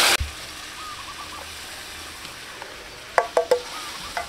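Milk pouring into a hot wok of fried paste with a loud splashing sizzle that cuts off a moment in, followed by the faint steady sizzle of the sauce simmering. A little after three seconds in come three short, quick pitched calls, like a bird's.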